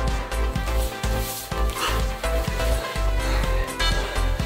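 Upbeat electronic dance music with a steady beat, playing as a workout soundtrack.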